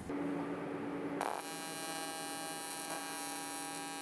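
AC TIG welding arc on aluminum buzzing steadily, struck about a second in, from an Everlast Typhoon 230 running an advanced square wave at 161 Hz. A faint steady hum comes before the arc starts.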